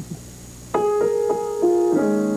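Piano notes struck one at a time, a little under a second in, about four notes in quick succession stepping through a melody and then a fuller chord near the end: the opening of a tune being improvised on the spot.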